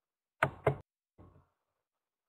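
Two sharp clicks about a quarter second apart, close to the microphone, made on the computer as the presentation moves on to the next slide.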